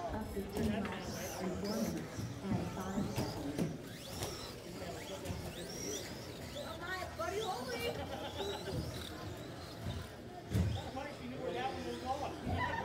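Indistinct voices of people talking, not clear enough to transcribe, mixed with brief high-pitched chirps and glides.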